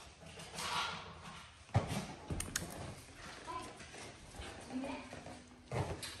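Faint, indistinct voices with a few sharp taps and knocks, the loudest about two seconds in.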